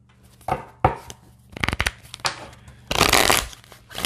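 A deck of oracle cards being shuffled by hand: several short bursts of cards flicking and sliding against each other, with a quick run of clicks before the middle and a longer burst about three seconds in.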